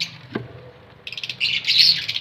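Pet parrots chirping: a quieter first second, then from about a second in a rapid, dense chattering of high chirps that grows louder toward the end.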